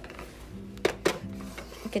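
Two light plastic knocks, a fraction of a second apart near the middle, as a plastic toy bread slice is dropped into the slot of a toy toaster, over soft background music.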